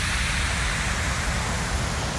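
Steady hissing noise over a deep rumble: the whoosh sound effect of an animated logo intro.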